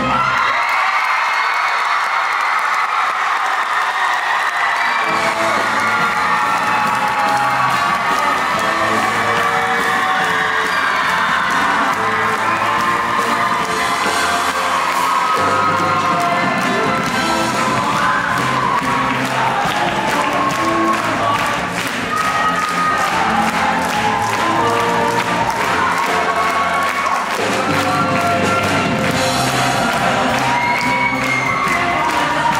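Show choir singing over a live band with saxophones and electric guitars, the audience cheering and whooping over the music. The band's low end drops out for the first few seconds, then comes back in.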